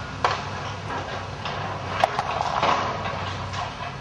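Demolition excavator breaking up a building's timber roof: a steady diesel engine hum under irregular cracks and knocks of breaking timber and falling rubble, the sharpest just after the start and about two seconds in.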